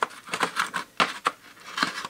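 Steel sockets and hand tools clinking and clattering as they are picked through and tried for size: a run of short, irregular sharp clicks, several a second.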